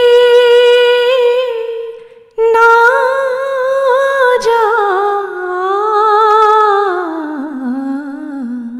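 A woman singing unaccompanied into a handheld microphone in slow, long-held notes. There is a short breath about two seconds in, then a second long phrase whose pitch slides gradually lower near the end.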